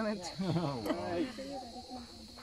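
A woman's voice talking in a coaxing, sing-song way, fading to softer voiced sounds near the end, over a steady high-pitched insect drone.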